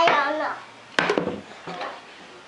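A toddler's short wordless vocal sounds, with a sharp plastic clack about a second in as she handles a toy cash register and its microphone.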